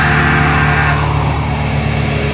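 Heavy metal band holding a sustained guitar chord that rings on, with a cymbal wash fading out about halfway through and no drum hits.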